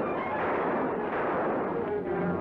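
A loud burst of dense crashing noise, of the explosion kind, on an old film trailer's soundtrack, dying away near the end.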